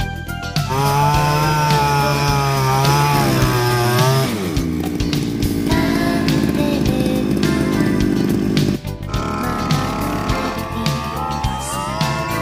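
Small two-stroke engine of a rice-paddy weeder running at high revs. Its pitch drops about four seconds in and holds lower, breaks off suddenly past the middle, then comes back and rises again near the end.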